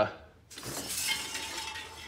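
Steel tape measure blade being pulled off the engine's belt pulleys, a continuous metallic rasp and clink that starts about half a second in.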